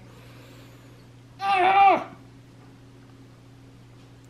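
One short pitched call about a second and a half in, rising then falling in pitch, over a low steady hum.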